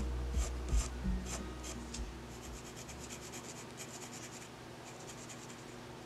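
Graphite pencil scratching across a small card of cold-press watercolour paper in short, quick sketching strokes. Low background music fades out in the first couple of seconds.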